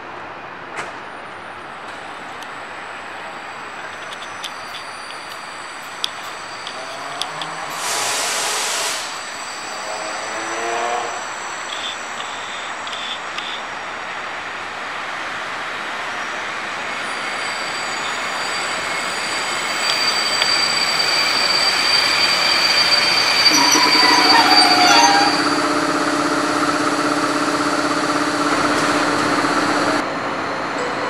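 EU07-family electric locomotives with passenger trains: a short sharp hiss of air about eight seconds in. From the middle on, a train's running noise grows louder, with a steady high squeal and humming tones.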